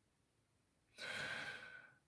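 A man's audible breath, like a sigh, about a second in and lasting just under a second; the rest is near silence.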